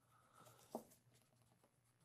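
Near silence: faint scratching of a pencil writing on paper, with one brief soft tick about three-quarters of a second in.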